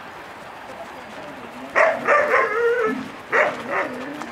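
A dog barking in a quick run of short yips about two seconds in, then two more yips near the end.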